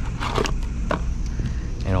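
Gloved hands handle a new 24-volt control transformer and pull it out of its cardboard box, making scattered clicks and rustles. A steady low hum runs underneath.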